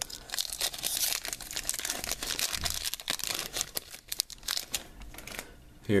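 Foil wrapper of a Pokémon Furious Fists booster pack crinkling and tearing as it is opened by hand, a dense crackle that thins out about four seconds in.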